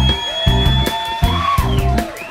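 Live UK jazz band playing: drum kit with cymbals, a bass pulsing about twice a second, and a long held high note over the top.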